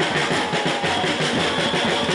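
Marching drums played in a fast, even beat.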